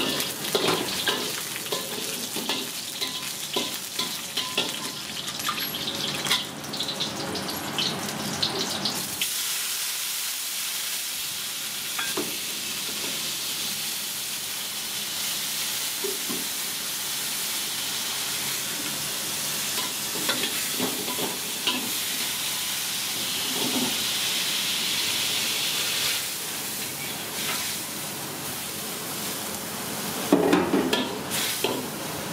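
Stir-frying in a steel wok: a metal spatula scrapes and knocks against the pan over a sizzle for the first nine seconds or so. After that comes a steady sizzle of sliced sea snail meat frying in hot oil and sauce. The sizzle changes near the end as water is poured into the hot wok.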